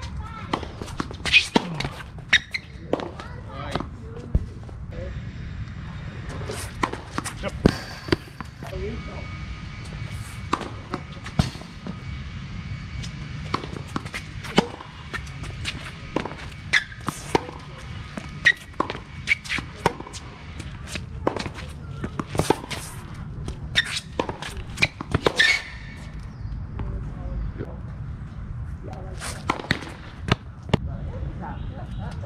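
Tennis rallies on a hard court: the sharp pock of balls struck by rackets and bouncing on the court, spaced a second or so apart in runs, with pauses between points.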